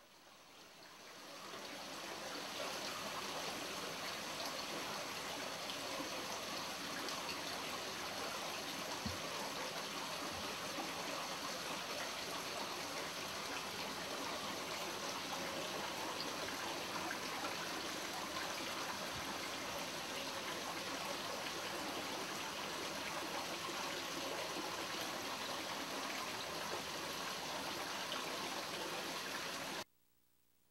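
Running water, a steady stream-like trickle, fading in over the first two seconds and stopping abruptly at the end.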